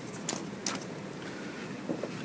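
Brief rustles and scrapes from hands handling a roll of mounting tape and a plastic photo frame on a cutting mat, a few short separate noises over a low background hiss.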